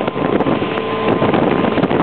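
Steady rush of wind on the microphone over the running of a small boat's motor as it cruises along, with a faint whine about a second in.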